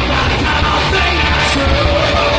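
Live rock band playing loud and without a break: electric guitars, bass guitar and drum kit, with a lead singer's vocal over the top.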